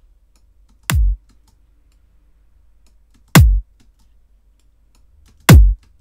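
Kick drum sample played three times through a Tube-Tech CL 1B compressor plugin, each hit a sharp click dropping into a deep thump that falls in pitch. The second and third hits are louder than the first.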